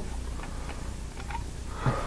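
A pause in the voice-over: a steady low hum, with a few faint ticks.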